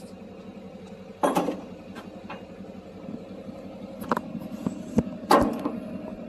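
A motor vehicle's engine running steadily, with a few sudden knocks and rustles of a hand-held phone being moved, the loudest about a second in and near the end.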